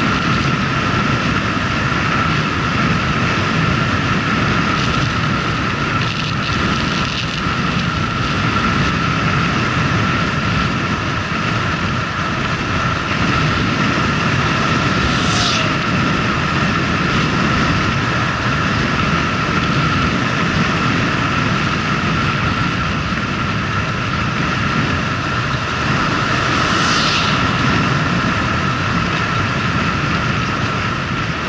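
Töffli moped riding along a road, with loud wind rumble on the microphone and a steady high whine. Two brief high squeaks that fall in pitch come about halfway through and near the end.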